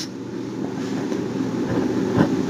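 A steady low rumble of background noise with no clear rhythm or pitch.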